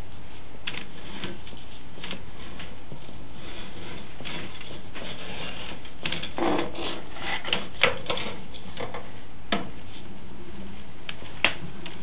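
Drain inspection camera and its push cable being pulled back through a drain pipe: scattered clicks and taps over a steady hiss, busiest about halfway through, with single sharper knocks near the end.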